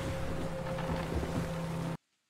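Wind and sea noise of a sailing ship at sea from a TV drama's soundtrack: a steady rush with a faint low held tone beneath it. It cuts off abruptly at the end.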